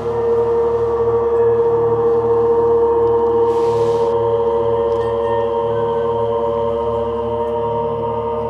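A sustained drone of ringing, gong-like tones that swells up at the start and then holds steady, with a low pulsing beat underneath, two or three pulses a second. A second tone joins just above the main one about three and a half seconds in.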